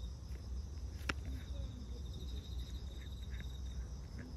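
Steady high insect chirring from crickets or similar insects, under the faint, intermittent smacking of a cat chewing and lapping wet food. One sharp click about a second in.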